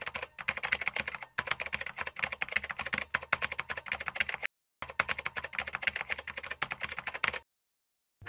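Rapid computer-keyboard typing clicks, a sound effect for text being typed out on screen, in two runs with a brief pause about four and a half seconds in; the clicking stops about half a second before the end.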